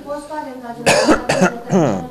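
Two coughs about half a second apart, followed by a short voice sound falling in pitch.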